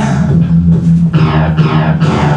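Rock band music with a steady bass guitar line and strummed guitar, without singing.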